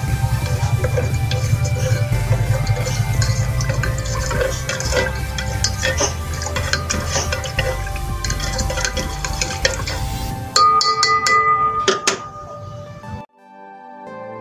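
A spoon stirring and scraping in a small stainless steel pot of hot solution over a gas burner's steady low rumble, with background music under it. About ten and a half seconds in, the stirring sound cuts off; a short louder stretch of ringing music-like tones follows, then a sudden drop before soft music.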